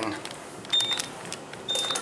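Short, high electronic beeps from an Otis elevator car's button panel, each with a click, repeating about once a second as the lobby button is pressed.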